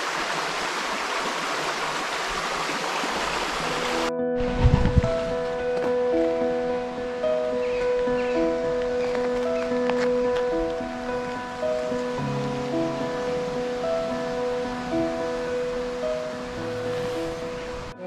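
A shallow, rocky stream rushing, which cuts off abruptly about four seconds in. Background music follows, with long held notes and a slow repeating melodic figure.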